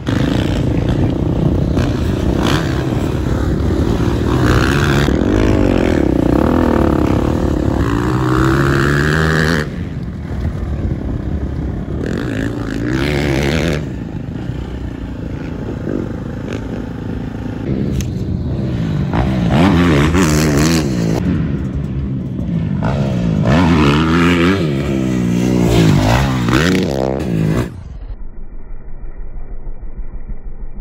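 Dirt bike engine revving hard on a motocross track, its pitch climbing and dropping with throttle and gear changes as the bike rides past. The sound cuts abruptly a few times and turns quieter near the end.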